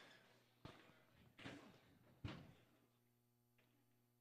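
Faint knocks of pool balls, three of them about a second apart, each with a short ringing tail, as balls settle after a shot.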